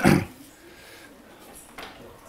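A single loud cough right at the start, dying away within a fraction of a second, followed by quiet room tone with a brief faint noise near the end.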